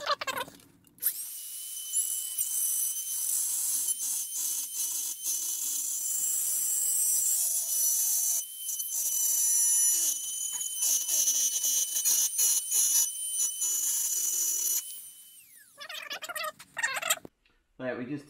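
Dremel rotary tool running at high speed, drilling and cutting through a plastic trim panel, a steady high-pitched whine with the cutting noise coming and going as the bit works the plastic. It is switched off near the end and winds down with a falling whine.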